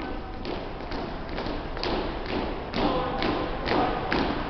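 A platoon of cadets marching in step on a hardwood gym floor, their boots landing together in a steady beat of about two steps a second.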